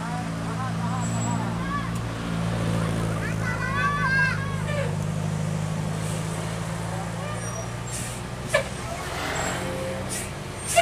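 Tour bus diesel engine running steadily under load as the bus climbs a tight bend, with people shouting briefly about four seconds in and a few short sharp bursts near the end.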